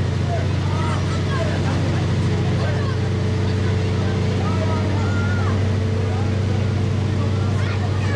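A motor vehicle's engine running steadily nearby, a low even hum that does not change, with a crowd's chatter over it.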